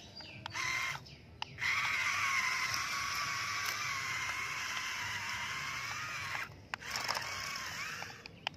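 Small electric motor and plastic gearbox of a toy RC dump truck whining as it drives. It runs in three spells: a short burst about half a second in, a long steady run of about five seconds, then another short burst near the end.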